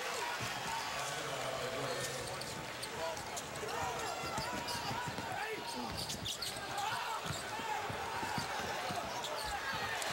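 A basketball dribbling on a hardwood court over steady arena crowd noise during live play.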